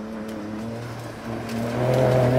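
2018 Ford Raptor pickup's twin-turbo V6 under hard acceleration as the truck approaches, the engine note climbing in steps and growing louder toward the end.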